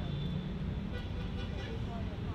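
Steady distant city traffic rumble, with a few faint short chirps and distant voices over it.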